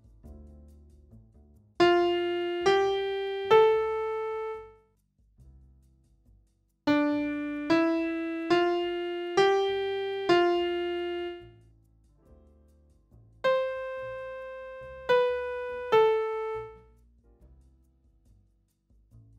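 Digital piano notes played in three short phrases with pauses between: three rising notes, then a run of six, then three falling notes. Each note strikes sharply and fades as it rings out.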